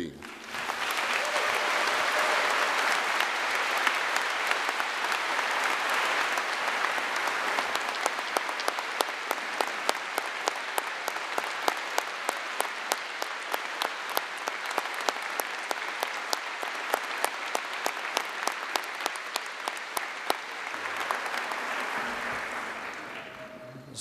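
Audience applauding: a dense wash of clapping that starts at once, thins after several seconds into more separate claps, and swells briefly again near the end.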